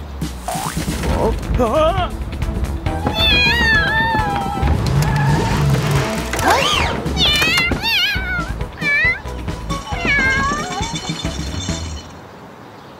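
Cartoon soundtrack: background music with several bursts of high, squeaky, wavering voice-like sounds.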